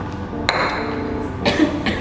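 A glass beaker set down on the lab bench: a sharp clink with a brief high ringing about half a second in, then a softer knock about a second later.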